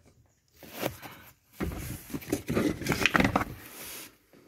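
Hands handling the cabin air filter and its plastic housing: scattered light plastic clicks and rustling, starting about a second and a half in after a nearly quiet start.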